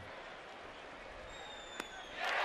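Low ballpark crowd murmur, with a faint high whistle late on. A single sharp pop about 1.8 s in is the pitch smacking into the catcher's mitt on a swinging strike.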